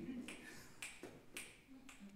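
Three faint, sharp clicks about half a second apart in an otherwise quiet pause.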